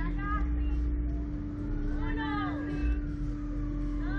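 A steady mechanical hum over a heavy low rumble, with short stretches of voices in the background near the start and again about halfway through.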